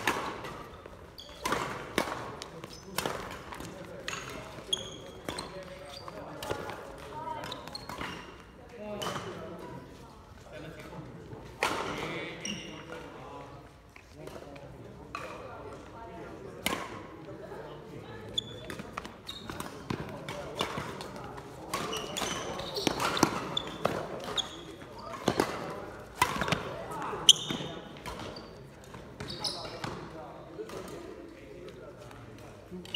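Badminton rally: sharp cracks of racquets striking the shuttlecock at irregular intervals, with short high squeaks of shoes on the wooden court floor, echoing in a large sports hall.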